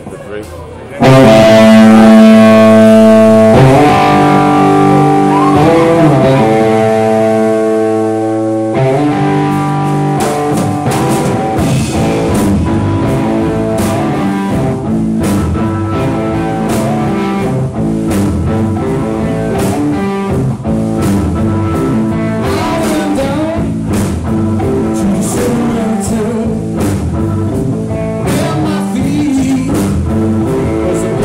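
Live rock band playing loud: electric guitars and bass come in together about a second in with long held chords. About nine seconds in, drums join and the band settles into a driving rock beat.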